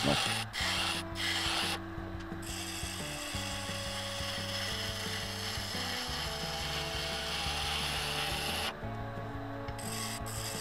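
Wood lathe spinning a laminated hardwood blank at about 1800 RPM, with a steady motor hum under the scraping hiss of a turning tool cutting shavings. The cutting stops briefly about two seconds in and again near the end.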